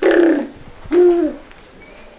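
Two short, loud hoot-like vocal calls about a second apart, each rising then falling in pitch.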